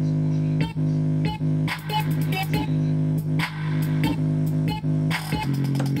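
Bass-heavy electronic music played loud through a small portable speaker: a held low bass note broken by sharp percussive hits, with a repeated chopped vocal near the end.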